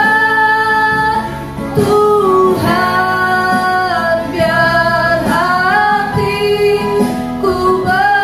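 Women singing a slow Indonesian worship song, with long held notes that glide between pitches, over electronic keyboard accompaniment.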